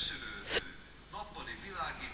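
Faint, indistinct voices of people talking in the background, with a single sharp click about half a second in.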